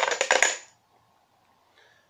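Plastic numbered raffle tokens rattling and clattering together inside a plastic box as they are stirred and one is drawn out, stopping under a second in.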